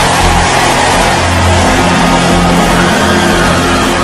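Sustained keyboard chords held under a loud, steady wash of crowd noise, as during congregational prayer.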